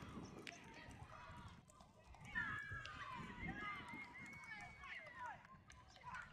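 Distant shouting and calling from several overlapping voices across a sports field, loudest from about two seconds in, with no clear words.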